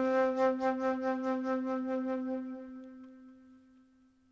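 Solo flute holding one long low note with a pulsing vibrato. It fades away over the last second and a half.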